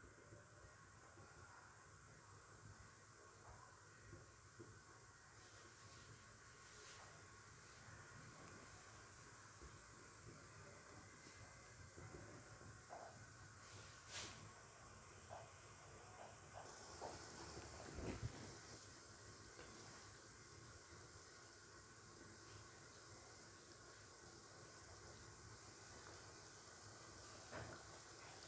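Faint, steady hiss of coconut-milk sauce simmering in a wok, with a couple of faint clicks.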